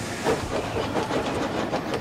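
Steam locomotive hauling a train of freight wagons, with a steady hiss of steam and the wagons' wheels rolling on the track.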